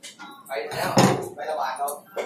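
A heavy kitchen knife (deba) set down on a plastic cutting board: a single sharp knock about a second in.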